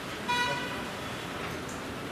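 A single short horn toot, about half a second long, sounding a quarter second in over a steady background hiss.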